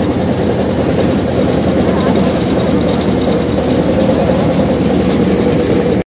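Tractor engine driving a grain thresher through its PTO shaft, both running steadily under load, with a continuous hum and the thresher's light rattle on top.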